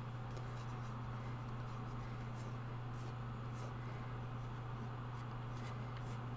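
Faint brush strokes of a watercolour brush on paper, a few short scratchy touches, over a steady low hum.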